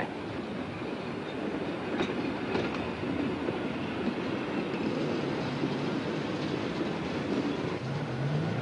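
Covered goods wagons rolling slowly along a siding behind a small diesel shunting locomotive: a steady rumble and rattle of wheels on rails, with a couple of faint knocks about two seconds in.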